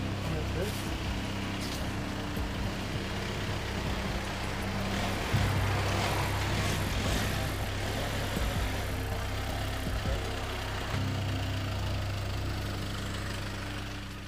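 Background score of sustained low notes that shift about five seconds in and again near eleven seconds, over steady street traffic noise.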